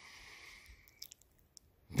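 A faint breath drawn through the mouth, lasting about a second, followed by a few faint clicks.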